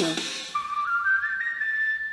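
A thin whistle-like flute melody in a K-pop track: a single pure tone that climbs in steps through a few notes and is held, starting about half a second in, just after a sung note slides up and stops.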